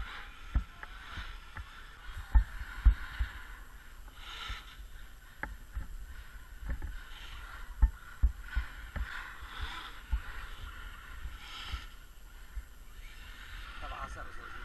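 Small electric motors of radio-controlled trucks whining on the ice, the pitch surging and easing as they accelerate. Irregular short low thumps cut through it, the loudest around two and a half to three seconds in.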